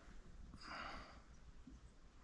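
Low room tone with one short breath, a soft exhale about half a second in.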